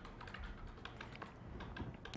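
Faint, irregular key clicks of typing on a MacBook laptop keyboard.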